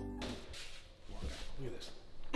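Background music that cuts off just after the start, followed by a quieter, even rustling noise with a brief faint voice.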